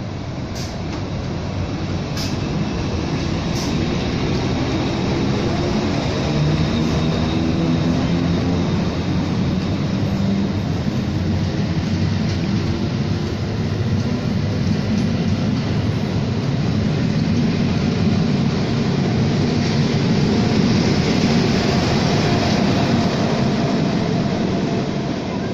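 A passenger train rolling slowly past along a station platform: steady rumble of coaches and wheels on rails, building over the first few seconds, with a few sharp ticks early on. A diesel engine's drone grows stronger in the second half as the diesel locomotive at the rear of the train comes by.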